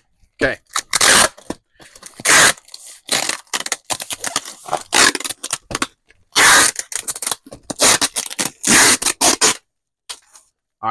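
A small cardboard shipping box being packed by hand, with a string of loud, sharp scraping and tearing rasps, some about half a second long, the loudest a little over two seconds in, about six and a half seconds in and near the end.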